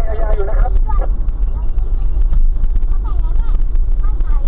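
Steady low rumble of a car's engine and tyres on the road, heard from inside the cabin. A voice is heard briefly in the first second.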